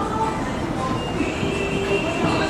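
Toshiba escalator running as it carries the rider down: a steady mechanical running noise from the moving steps and drive, even in level throughout.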